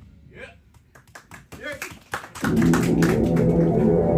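Scattered hand claps and a few voices calling out in a small live venue between songs, then about two and a half seconds in, loud rock music with guitar starts up for the next number.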